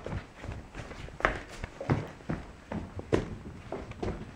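Footsteps of a person walking through the house: about five irregular soft thumps.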